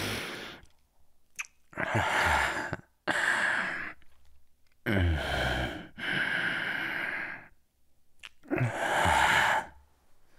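A man breathing heavily and sighing close to the microphone: about five long, separate breaths. The one about five seconds in is voiced, its pitch falling.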